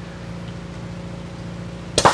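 A steady low mechanical hum with a faint hiss, holding the same pitch throughout. A single sharp crack comes right at the end.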